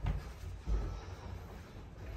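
Dull low thuds of bare feet and knees landing on a carpeted floor, two of them: one right at the start and one less than a second in, over a low rumble.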